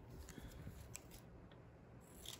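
A few faint, soft snips of scissors trimming a small paper planner sticker to size, scattered through an otherwise near-silent stretch.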